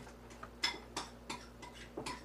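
Kitchen knife slicing and tapping down on a cutting board: a run of short, sharp knocks, about three a second.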